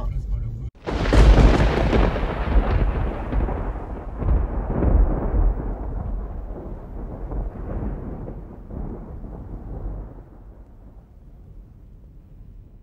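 A loud rushing rumble that starts suddenly about a second in and slowly dies away, its hiss fading first, until it is nearly gone near the end.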